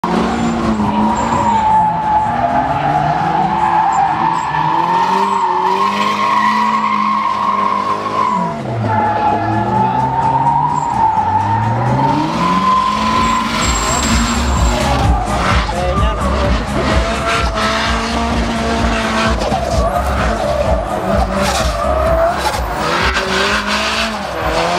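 Drift car engine revving up and down hard while the tyres squeal in a long slide. In the second half a heavier low rumble sets in, with many short sharp cracks.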